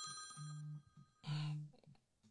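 A phone ringing faintly: short, steady low buzzes repeat about once a second under a high, steady chime-like ring that stops about a third of the way through.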